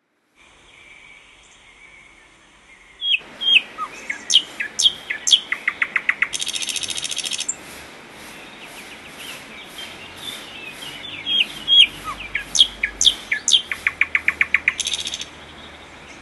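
Small birds calling: sharp descending whistled notes and quick runs of repeated chattering notes, with a harsh buzzy call lasting about a second. The calls come in two loud bouts, the first starting about three seconds in and the second around eleven seconds, after a faint opening.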